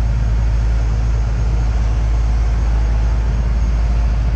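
Steady low rumble of a car ferry's engines heard from its enclosed car deck, with a faint hum above it.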